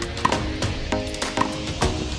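Background music with a steady percussive beat over sustained chords.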